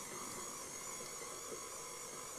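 Quiet, steady background hiss of room tone, with a few faint small knocks.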